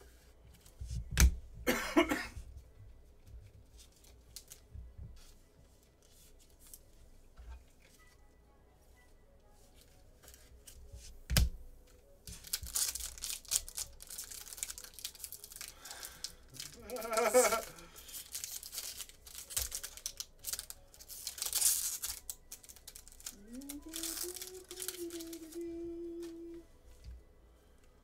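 Plastic card packaging crinkling and tearing in bursts as the wrapped cards are opened by hand, with a couple of sharp knocks on the table. There is a short hummed note near the end.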